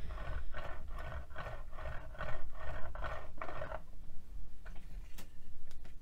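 Clear acrylic roller worked back and forth over a slab of polymer clay on a glass mat: a quick run of rolling strokes, about three a second, that stops about four seconds in, followed by a couple of light clicks.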